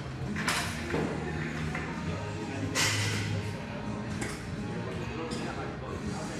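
Gym background music with indistinct chatter, broken by a few sharp clanks as the seated cable row's handles are let go and its weight stack settles.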